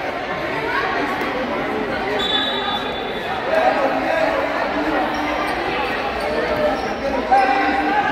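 Futsal ball being kicked and bouncing on an indoor court, with one sharp kick near the end standing out, among voices that echo in a large gymnasium.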